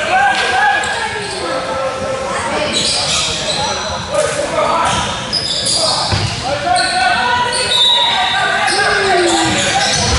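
Basketball game in a large hall: a basketball bouncing on the hardwood court, with thumps about six seconds in and near the end, among the voices of players and spectators, all echoing around the hall.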